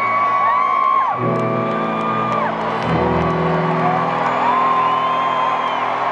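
Live concert music in an arena: sustained chords over a deep bass note that changes about a second in and again near three seconds. Above them, a wordless Auto-Tuned vocal line slides up and down, over crowd noise and whoops.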